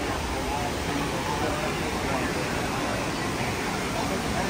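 Steady rushing of the artificial whitewater rapids and waterfalls of a theme-park river-rapids ride, under indistinct chatter of people.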